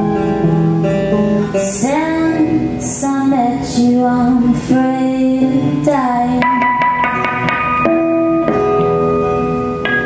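Live folk song: acoustic guitar and electric guitar playing together, with a woman singing.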